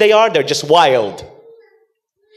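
A man's voice, with sweeping rises and falls in pitch, trailing off about a second and a half in.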